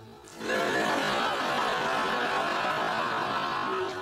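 A steady, even rushing noise with no clear pitch, starting about half a second in.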